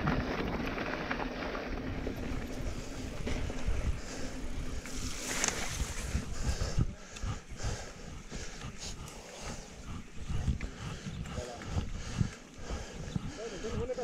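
Wind buffeting a handlebar-mounted action camera's microphone and a mountain bike rattling over a rough gravel and dirt track, louder in the first half. Faint voices of other riders come in near the end.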